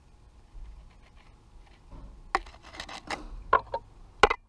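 Faint room tone for about two seconds, then a run of sharp clicks and small knocks from hands handling tools or parts at the workbench. The loudest knock comes a little after three and a half seconds.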